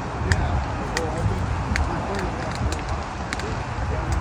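Outdoor ambience of people talking faintly over a steady low rumble, with a few sharp clicks scattered through.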